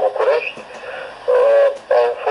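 A person talking over a telephone line, the voice thin and narrow with the low end cut off, dipping quieter about halfway through.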